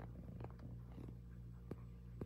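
Quiet room tone: a steady low hum, with a few faint light clicks, the clearest near the end.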